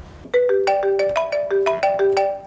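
Mobile phone ringtone: a quick marimba-like melody of struck, ringing notes, about five a second, starting a moment in.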